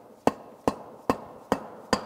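Small rubber mallet tapping the end piece of an iron exhaust manifold to seat it into the centre section over its seal. Five even, sharp taps, a little over two a second.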